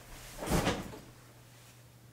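Someone sitting down in a leather office chair: a short bump and rustle of the chair and clothing about half a second in, lasting about half a second.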